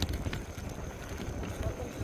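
Low rumbling with scattered light knocks and rattles from a bicycle ride, with wind and road noise on the phone's microphone.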